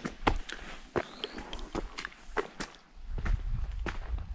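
A person's footsteps walking at an unhurried pace on a stone-paved path, a sharp step roughly every half to three-quarters of a second.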